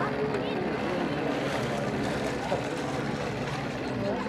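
A steady engine drone under faint background chatter of voices.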